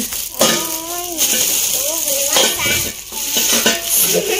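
Plastic packaging bag crinkling and rustling as it is pulled out of an air fryer's drawer and basket, with a child's voice in short wavering snatches over it.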